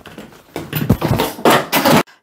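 A camera tripod falling off a work table and clattering to the floor, knocking a tub of plastic sewing clips flying. Loud knocks and rattles build up from about half a second in, crowding together over the last second.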